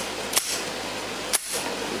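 Slide of a Kel-Tec P-3AT .380 pocket pistol racked by hand: two sharp metallic clacks about a second apart, the second louder, as the slide is worked to eject a chambered round in a function check after reassembly.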